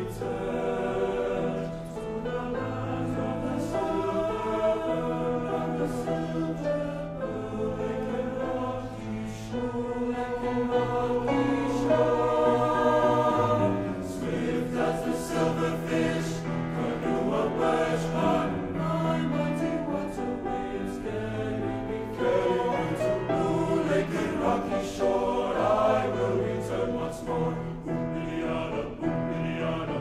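High school men's choir singing a choral arrangement in several-part harmony, with long held chords and a low bass line that moves every few seconds.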